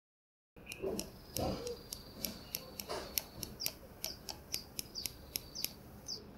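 A finger knocking repeatedly on the mineral glass screen of a genuine Casio G-Shock GA-400, giving light, glass-like ticks about three a second, starting about a second in. The hard tick is the sign of a real mineral crystal rather than the plasticky sound of a fake's resin screen.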